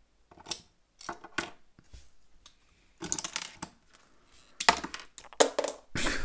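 Hard plastic LEGO parts clicking and clacking as a LEGO Ninjago dragon model and its loose flame pieces are handled. There are several separate clacks, a denser rattle about three seconds in, and the sharpest clacks near the end.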